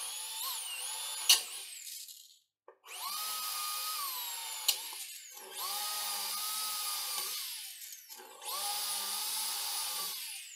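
Corded electric drill drilling into a 2 mm iron plate, running in four bursts with short pauses, its whine dropping in pitch as it slows at the end of each burst. Two sharp clicks stand out, about a second in and near the middle.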